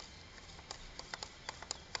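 Several faint, light clicks and taps as hands handle the parts of a manual gearbox's bell housing, over a quiet background.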